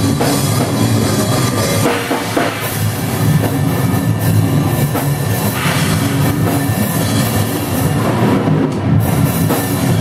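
Drum kit played hard in a live heavy metal band, close to the kit, with the rest of the band playing loudly underneath.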